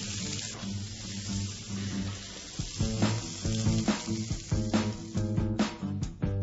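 Olive-oiled haddock steaks sizzling steadily on a smoking-hot dry grill pan. About halfway through, background music with plucked guitar notes comes in over the sizzle.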